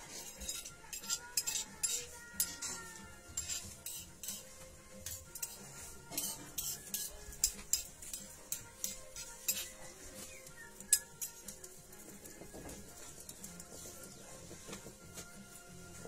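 A large oval grinding stone rocked over a flat stone batán slab, grinding chili peppers, with irregular stone-on-stone clicks and scrapes that thin out after about eleven seconds. Faint music plays underneath.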